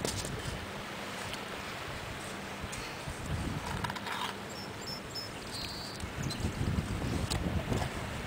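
Wind buffeting the microphone in low, uneven gusts, with faint scraping of hands digging in wet sand.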